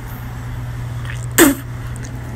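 A single short, sharp vocal burst from a person about one and a half seconds in, over a steady low hum.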